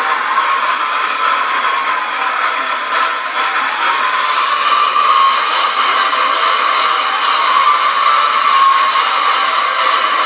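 Computer speakers playing a mashup of many video soundtracks at once, picked up by the camera as a loud, steady, distorted wash of noise with no clear beat.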